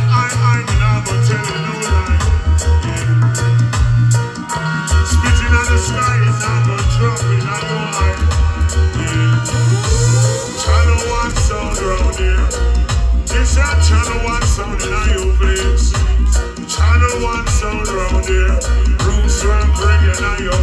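Reggae record playing loud through a sound system: a deep bass line repeating in short phrases, with a sung vocal over it.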